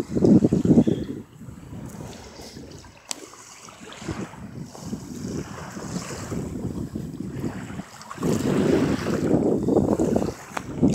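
Wind buffeting the phone's microphone in gusts, loudest in the first second and again near the end, over small waves lapping across a shallow grassy shore.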